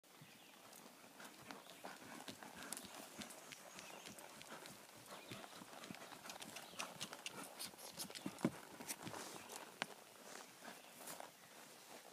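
A horse trotting: faint, uneven hoofbeats, with a sharper knock about eight and a half seconds in.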